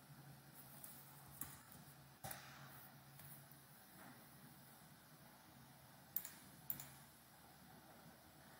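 Near silence broken by a few faint clicks of a computer mouse and keyboard while CAD sketch dimensions are entered, with two sharper clicks close together near the end.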